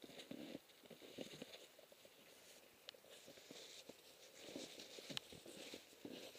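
Near silence: faint rustling and a few light knocks of gear being handled on snow.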